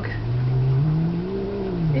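Angry house cat's low, drawn-out growling yowl, rising slowly in pitch and falling again near the end, at the sight of a strange dog outside.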